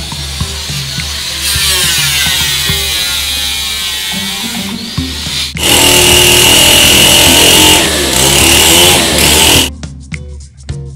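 Electric power sander working on a hollowed wooden drum shell: a rough sanding noise from about a second and a half in, then much louder from about halfway with a steady high whine, stopping just before the end. Background music runs underneath.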